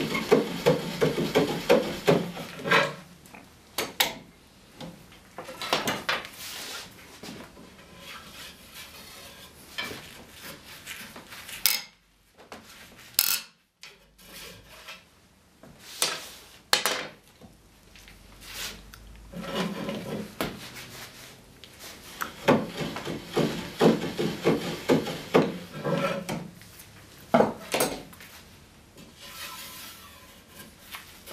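A taper reamer turned in a hand brace, scraping wood inside a spindle hole in a wooden chair arm rail to taper it. The rapid scraping strokes come in two bursts, at the start and again from about two-thirds of the way through, with a few sharp knocks of tool and wood in between.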